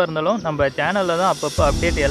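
A person talking, with background music with a low beat coming in about one and a half seconds in.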